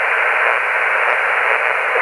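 Amateur radio transceiver receiving lower sideband on the 40-metre band (7.085 MHz), giving a steady hiss of band noise with no station transmitting. The hiss is narrow and thin, cut off above and below like a telephone line.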